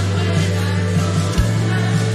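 A live worship band playing a slow congregational song, with sustained bass notes that change pitch about halfway through.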